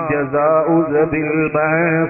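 A man's voice chanting a melodic religious recitation, drawing out long held notes that waver and glide in pitch.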